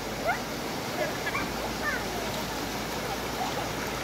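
Steady rush of a flowing river, with faint voices over it.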